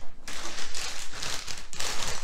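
Clear plastic LEGO parts bags crinkling and rustling as they are handled and shuffled, a continuous run of crackles.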